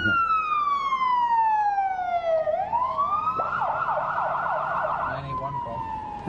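Ambulance siren: a long wail falls slowly in pitch, rises again about halfway through, switches to a rapid yelp for under two seconds, then goes back to a slow falling wail near the end.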